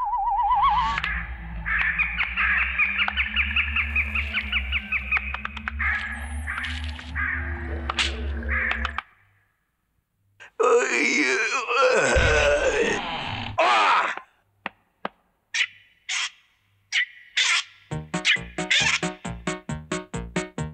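Cartoon soundtrack: warbling, whistle-like effects over a low hum for about nine seconds, then a short silence and another burst of wavering effects with a few scattered plucks. Near the end comes fast, even plucking on a gusli, about four strokes a second, opening a song.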